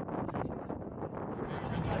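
Wind buffeting the microphone outdoors, a steady low rumbling hiss, with faint voices of people talking nearby; it grows a little louder near the end.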